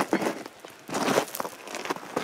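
Footsteps crunching on gravel, a few irregular steps.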